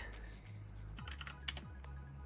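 A few faint keystrokes on a computer keyboard, typing a stock ticker symbol to call up a new chart.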